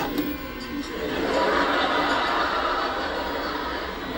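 Studio audience laughing, swelling about a second in and tailing off toward the end.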